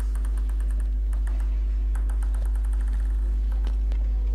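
A steady low electrical hum on the broadcast audio, the loudest thing throughout. Over it come runs of quick light ticks, about eight a second, from a table tennis ball being bounced on the table before a serve.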